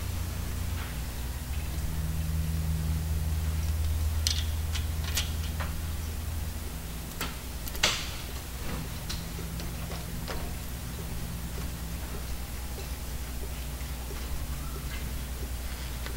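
Scattered light clicks and taps of a brake-line banjo bolt and copper washers being handled and fitted to a brake caliper, the sharpest about eight seconds in, over a steady low hum.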